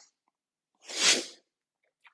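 A man's single forceful exhalation through the nose, one short sharp out-breath about a second in: the active exhale of slow-speed Bhastrika (bellows-breath) pranayama.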